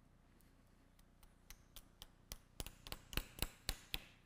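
A metal mallet striking the handle of a Knee FiberTak anchor inserter, tapping a double-loaded knotless suture anchor into bone. It is a run of sharp knocks that begin faint about a second in, then grow louder and come faster, about four a second near the end.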